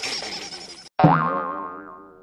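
The closing notes of a sung song fade out. About a second in comes a cartoon 'boing' sound effect: a sudden wobbling twang that dies away over about a second.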